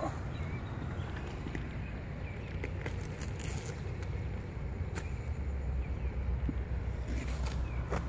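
Outdoor wind rumbling steadily on the microphone, with a few short, soft knocks and rustles scattered through it.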